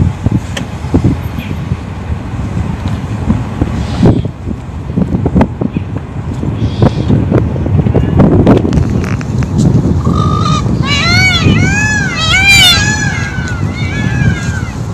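A low rumble of vehicle and wind noise with scattered knocks, then from about ten seconds in a quick series of overlapping rising-and-falling calls from several Indian peafowl for about three seconds.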